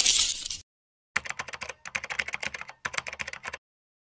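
Computer-keyboard typing sound effect: a fast run of clicks starting about a second in, with two brief pauses, stopping shortly before the end. Before it, a loud hissy sound cuts off about half a second in.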